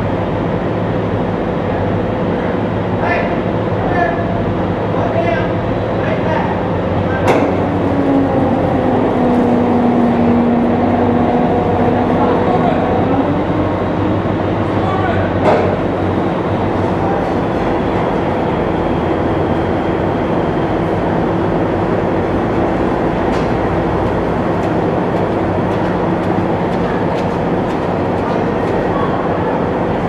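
AAV-7A1 amphibious assault vehicle's diesel engine running steadily, with its steel tracks and hull rattling and whining as it is marshalled across the well deck. Two sharp metallic clanks stand out, one about seven seconds in and one about halfway through.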